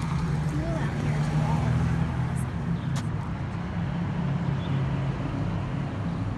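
Street traffic: a motor vehicle engine running nearby, a steady low drone, with a single click about halfway through.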